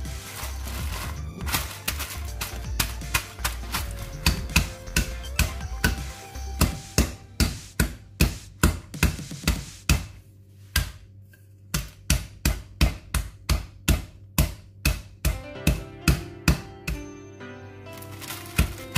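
A wooden rolling pin pounding roasted almonds in a plastic bag on a countertop, crushing them: a steady run of sharp thuds about two a second, with a short pause about ten seconds in.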